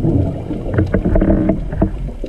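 Scuba diver's exhaled bubbles rumbling and gurgling, heard underwater through the camera housing, with scattered small clicks.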